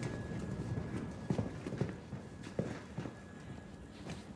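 Slow footsteps, a handful of irregular, separate steps, over a low steady hum.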